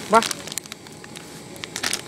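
Plastic instant-noodle packets crinkling as they are handled, a few short crackles with a cluster near the end.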